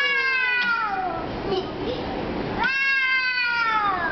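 A young child's two long, high-pitched excited squeals, each falling in pitch; the second begins about two and a half seconds in.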